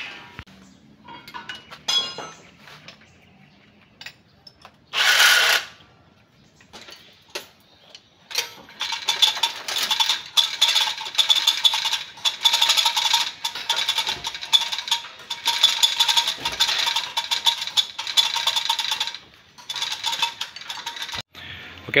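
Hand tools working on the radiator fittings: scattered metal clicks and clinks, a short hiss about five seconds in, then about ten seconds of rapid metallic clicking typical of a socket ratchet turning bolts.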